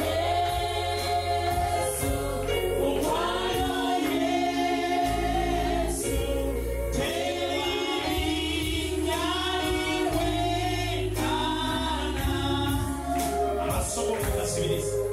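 Gospel worship song: a group of voices singing slow phrases of long held notes over low sustained bass notes.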